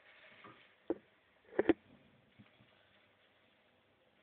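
Three sharp knocks, one about a second in and a quick louder pair just after, over faint rustling.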